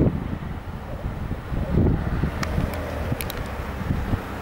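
Wind buffeting the camera microphone: an uneven low rumble that swells and eases, with a few faint ticks in the second half.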